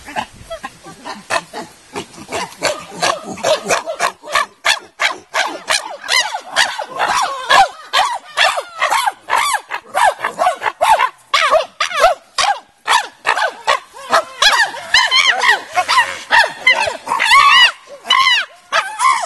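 A group of chimpanzees calling loudly: rapid runs of short panting calls, several a second, that grow into louder, higher screams in the last few seconds.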